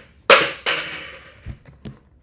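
Two loud, sudden noises close together, each trailing off over a fraction of a second, followed by a few light clicks.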